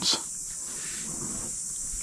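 Steady background hiss with a faint high-pitched band and no distinct events, heard in a pause between spoken sentences.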